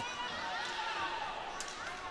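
Rink hockey game sound in a sports hall: a steady murmur with faint distant voices, and a few light clicks of sticks and ball near the end.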